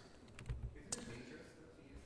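Two faint clicks of computer keyboard keys about half a second apart, with a low thump between them: keypresses advancing the presentation slide.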